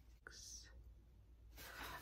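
Near silence: room tone, with a faint click early and a soft breath drawn just before speech resumes.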